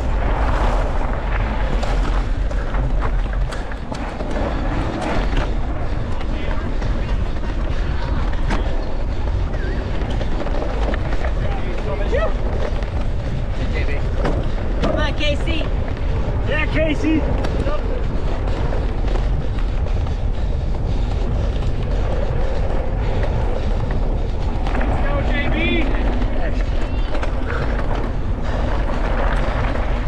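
Steady wind rumble on the microphone of a camera riding on a mountain bike at race speed, mixed with the rolling noise of knobby tyres on gravel and grass. Brief voices come through a few times, around the middle and again near the end.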